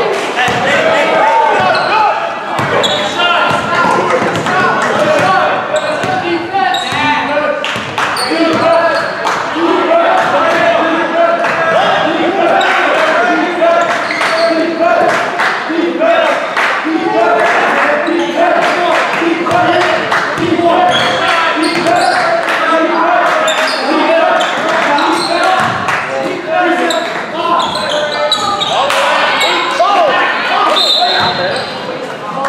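Basketball bouncing on a gym's hardwood court as it is dribbled and played, among voices of players and spectators, echoing in a large hall.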